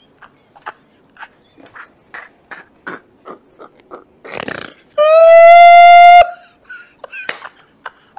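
A man laughing hard in short, breathy gasps. Near the middle comes a loud, high-pitched squeal held for just over a second, rising slightly at its start and then cutting off abruptly, followed by more gasping laughter.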